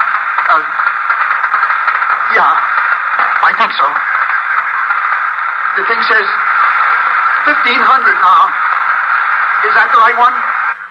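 Steady radio static hiss like a two-way aircraft radio link, with a faint, distorted voice breaking up in and out of it.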